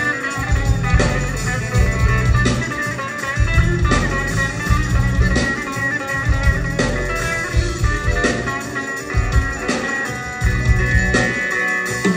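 Bağlama (long-necked Turkish saz) played live, picking out a melodic instrumental line, over a low accompaniment that pulses in regular beats.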